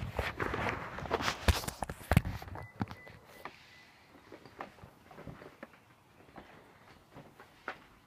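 Handling noise from a covered phone: knocks and rubbing right on the microphone. It is busiest in the first two or three seconds, then thins out to scattered taps.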